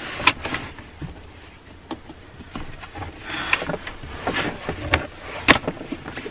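A heavy plastic convertible car seat being shifted and settled on a leather car seat: scattered knocks, rustling and scraping, with a sharp click about five and a half seconds in.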